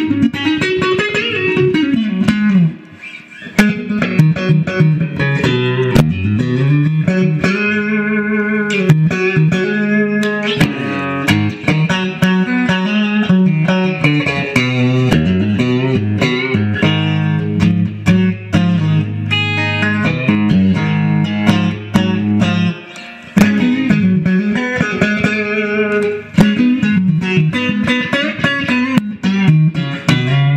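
1965 Fender Stratocaster played straight into a 1966 Fender Super Reverb amp: a continuous run of single-note electric guitar lead lines with string bends and vibrato on held notes, with brief pauses about three seconds in and again past twenty seconds. The recording reaches full scale on its peaks, and the player says it clips.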